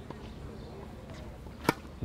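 A tennis racket striking the ball once on a serve, a single short sharp pop near the end, over faint outdoor background.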